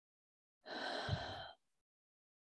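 A woman's deep breath, a single sigh lasting about a second, starting a little past half a second in.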